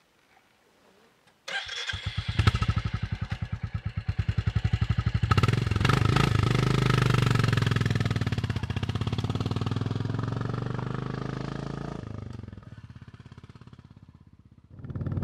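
Royal Enfield Classic 350's single-cylinder engine starting about a second and a half in and idling with an even thumping beat, then getting louder as the motorcycle pulls away and fading as it rides off into the distance.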